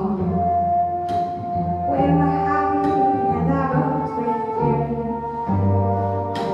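Live acoustic ensemble of cello, bassoon and keyboard playing a slow passage: low bowed cello notes repeat underneath while long held melody notes sound above them. A bright struck accent comes about a second in.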